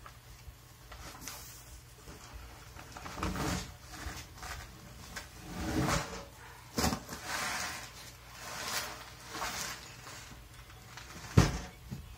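Heavy cardboard box holding a rear-tine tiller being dragged off a pickup's tailgate and walked on its corners across asphalt: a series of short cardboard scrapes and knocks, then one loud thump near the end.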